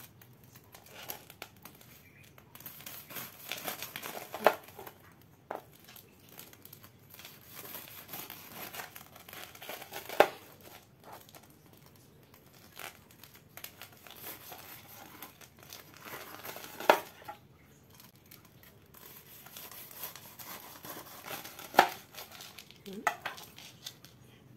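Kitchen knife sawing through the crisp fried breadcrumb crust of sausage-filled bread rolls with a crackling crunch. Each cut ends in a sharp knock of the blade on the cutting board, four times about five to seven seconds apart.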